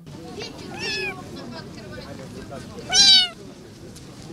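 A young kitten meowing twice: a faint meow about a second in, then a loud, high meow with a falling pitch near three seconds.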